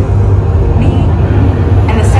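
Deep, steady rumble from the soundtrack of a projection show played through a hall's sound system, with faint voices behind it.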